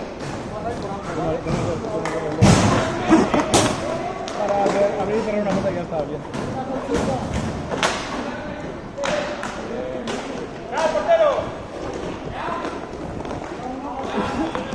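Inline hockey play: players' indistinct shouts and calls mixed with sharp knocks of sticks on the puck and floor. The loudest is a cluster of knocks about two and a half to three and a half seconds in, with another near eight seconds.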